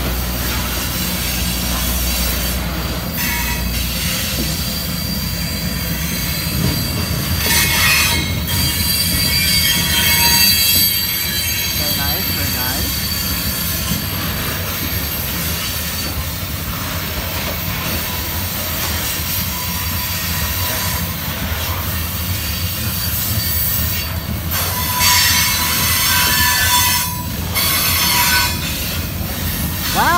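Freight train cars rolling past on the rails with a steady rumble. The wheels squeal high and thin in stretches, around eight to twelve seconds in and again near the end.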